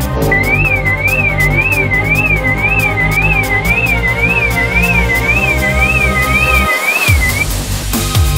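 BMW E90 car alarm siren going off, a high warbling tone sweeping up and down about twice a second that stops shortly before the end; it is set off as the car is lifted on a floor jack. Loud electronic dance music with a heavy beat plays underneath.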